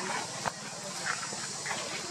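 Two brief high squeaks from macaques over a steady hiss, with a sharp click about half a second in.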